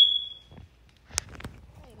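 A brief high-pitched tone that fades out within about half a second, then a single sharp click about a second in, with faint rustling.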